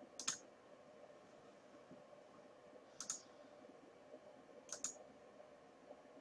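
Computer mouse clicking: three short pairs of quick clicks, about a third of a second in, at about three seconds and near five seconds, over a faint steady hum.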